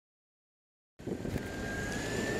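Dead silence for about a second, then a steady background hiss and low rumble with a faint high whine cuts in abruptly: the background noise of a new recording starting.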